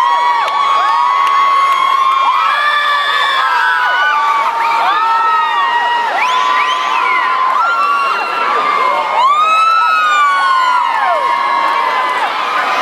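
Large crowd cheering and screaming, many high-pitched voices overlapping without a break.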